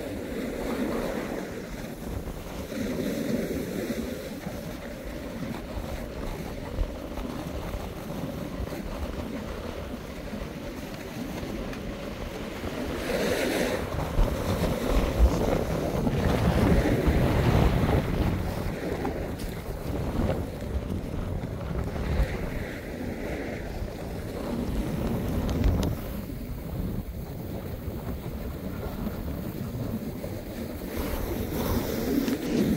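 Wind buffeting a phone microphone over the hiss and scrape of someone sliding down packed, groomed snow. The noise swells for several seconds around the middle, then settles again.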